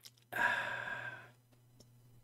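A man's breathy sigh through the mouth, about a second long, as he exhales after a sip from a mug.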